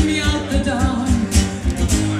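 Live pop cover by a singing duo: singing over acoustic guitar, with a steady beat of about four bass thumps a second.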